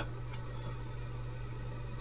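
Room tone: a faint steady low hum with a light hiss.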